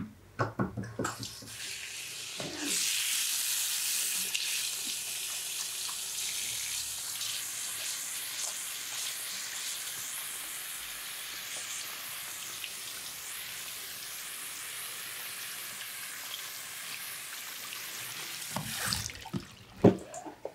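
Handheld sink sprayer running, a steady hiss of water spraying onto the hair and into the basin as the shampoo lather is rinsed out. The spray comes on about two seconds in and cuts off shortly before the end.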